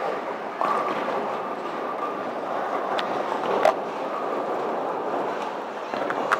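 Bowling alley din: balls rolling down the lanes in a continuous rumble, with a sharp click about three seconds in and a louder knock just after, like balls striking pins.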